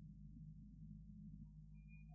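Near silence: only a steady low hum in the background of the recording, with a faint brief high tone near the end.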